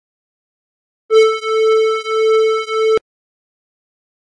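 A steady synthesizer tone at one mid-high pitch, played through a software noise gate. After a second of dead silence it comes in as a short first pulse and then three longer sustained pulses, and it cuts off abruptly.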